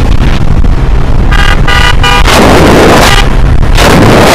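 A vehicle horn beeps three times in quick succession over the steady rumble of a ride, with wind on the microphone. Two loud rushes of noise follow.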